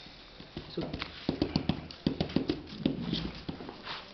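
An irregular run of quick, light clicks and taps lasting about three seconds, from a deck of trading cards being handled and shuffled in the hands over a playmat.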